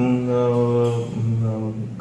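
A man's voice holding a long, flat-pitched hesitation sound between phrases of speech, in two stretches: about a second, then a shorter one.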